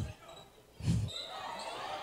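A basketball thudding on a hardwood gym floor: one loud thud right at the start and another about a second in, heard in the reverberant hall during a scramble for the ball.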